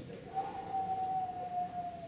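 A person imitating a dog's howl: one long high tone that starts about half a second in and sinks slightly in pitch as it is held.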